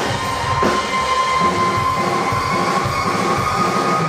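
Live rock band playing loudly: drums under a held, distorted electric guitar note that runs on steadily.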